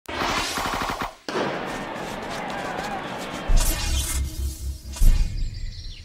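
Channel intro sting: music with noisy crash-like sound effects, a short break about a second in, a run of deep booming pulses in the second half and a heavy hit about five seconds in, then fading.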